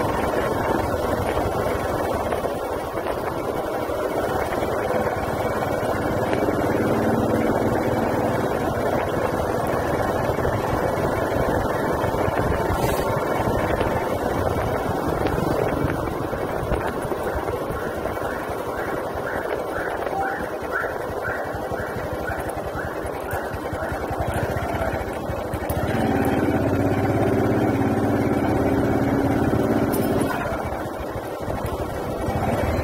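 A motorcycle riding along a street, with steady engine and wind noise. Near the end comes a louder stretch with a pitched note.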